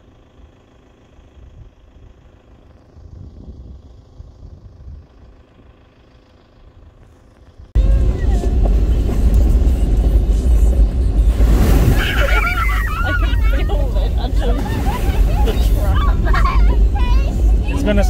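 Faint outdoor ambience for the first several seconds, then a sudden switch to the inside of a Toyota Prado 150 series driving a gravel track: a loud, steady low rumble of engine and tyres, with voices talking over it.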